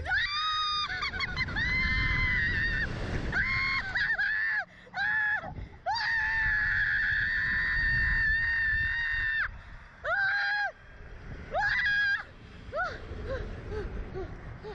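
A rider on a reverse-bungee slingshot ride screaming after the launch: a string of high-pitched screams, the longest held about three and a half seconds, with wind rumbling on the microphone underneath.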